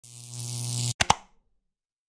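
Logo-animation sound effect: a rising swell with a low hum and hiss that cuts off abruptly about a second in, followed by two quick pops.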